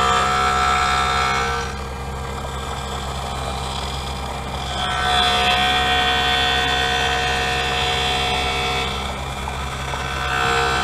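Automated optical lens edger grinding a plastic prescription lens to shape on its roughing wheel: a steady motor hum with a grinding whine that swells louder and eases off as the lens turns against the wheel, loudest for the first couple of seconds and again from about five to nine seconds in.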